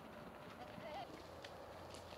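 A goat bleating once, faint and brief, with a wavering pitch, over quiet outdoor background with a few small faint clicks.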